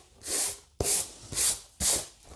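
A hand brushing leftover coarse salt crystals off dried watercolour paper: four quick swishing strokes across the sheet.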